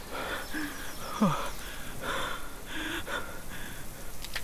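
A frightened man panting in quick, ragged gasps, some of them voiced, about six or seven breaths. About a second in comes a short sound sliding steeply down in pitch, the loudest moment.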